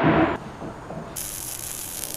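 A knock at the very start, then about a second in a steady high hiss starts abruptly: a spark-shower sound effect added over a hand tool throwing sparks.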